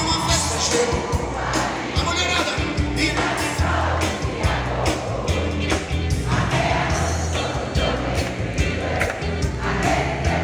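Live Brazilian pop-rock band playing through an arena PA, with a strong bass and drum beat and a sung melody, amid the sound of a large crowd.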